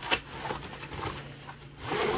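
Rustling and scraping of a Klim Carlsbad textile motorcycle jacket as hands work at its front closure, with a louder rasp near the end as the front is pulled open.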